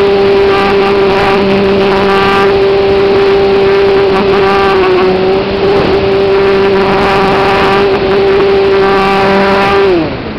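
A radio-controlled model plane's motor and propeller running at a steady high pitch, heard from on board with wind rushing over the airframe. At the very end the pitch starts to fall away and the sound gets quieter.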